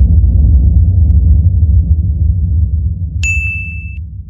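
Cinematic intro sound effects: a deep low rumble, loud at first and slowly fading away, then about three seconds in a bright high ding that rings on steadily.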